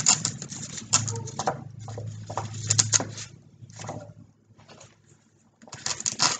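Artificial flowers being handled and their stems pushed into a foam centerpiece: irregular rustling and clicking strokes over a low steady hum that fades out about four seconds in.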